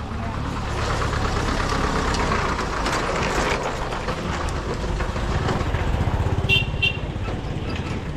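A light truck's engine running as it drives past close by, its rumble growing and pulsing loudest about six seconds in, over general street noise. Two short high beeps sound near the end.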